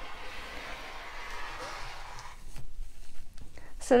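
45 mm rotary cutter blade rolling through cotton fabric along a ruler edge onto a cutting mat: a steady scratchy hiss for about two seconds. A few faint clicks and taps follow as the cut ends.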